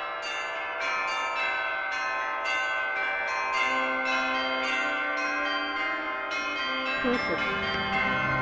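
Bells ringing, a quick continuous run of strikes with many overlapping ringing tones.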